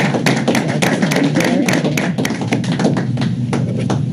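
A small group of people clapping in a room, a quick run of separate claps that thins out near the end.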